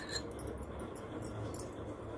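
Faint handling noise: a few small clicks and light scraping over a low steady hum, as a metal finger ring is slid off a ring-sizing mandrel.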